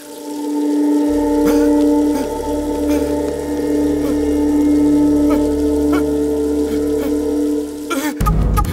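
Background-score drone: a sustained synthesizer chord of a few steady tones held unchanged, with a deep bass layer coming in about a second in.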